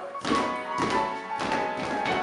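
Stage musical accompaniment with regular thumps on the beat, about two a second, from a troupe of child dancers stomping their feet on the stage floor.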